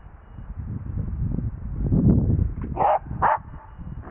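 A dog barking twice in quick succession near the end, two short barks about half a second apart, over low rustling and movement noise.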